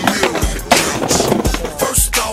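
Hip hop beat playing over skateboard sounds: wheels rolling on pavement and a sharp clack of the board under a second in.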